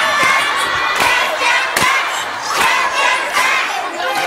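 A group of children shouting together, with several sharp thumps among the voices.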